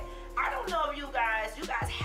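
A woman talking animatedly into a handheld microphone, her voice rising and falling in pitch, over background music.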